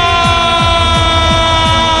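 Music: a loud held note slowly sliding down in pitch over a fast, steady, pounding bass beat.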